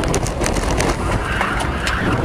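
A car driving, with steady road and engine noise and many short clicks or rattles mixed in.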